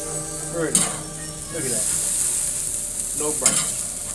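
Burger patties sizzling on a grill grate, a steady high hiss. A metal spatula scrapes and clanks on the grate twice, about a second in and again near the end, as the patties are turned.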